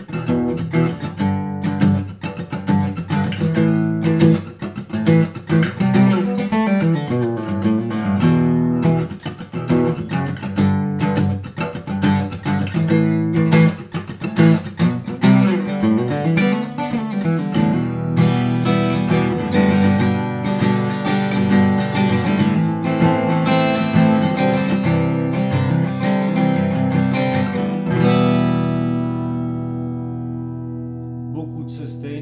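Handmade Jean-Marc Burlaud dreadnought acoustic guitar, solid spruce top with solid rosewood back and sides, played fingerstyle: a flowing run of picked chords and bass notes. Near the end a last chord is left ringing and fades.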